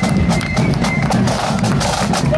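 Marching flute band playing with drums: a high held note that stops about a second in, over regular drum strokes.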